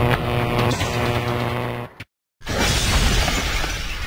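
Logo-animation sound effects: a held musical chord that cuts off suddenly about halfway through, a brief moment of silence, then a loud shattering crash that slowly fades.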